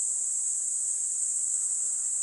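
A steady, high-pitched chorus of insects, unbroken throughout.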